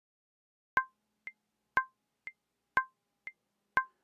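Metronome clicks counting in a steady beat: four louder clicks a second apart with a softer click halfway between each, short and dry.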